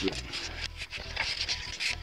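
Handling noise: irregular rubbing and scratching as a handheld camera is picked up and moved, with a low steady hum underneath.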